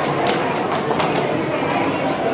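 Scattered audience clapping thinning out during the first second, over a steady murmur of children's voices.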